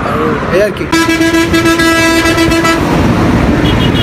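A vehicle horn sounds one steady blast of about two seconds over continuous road-traffic rumble.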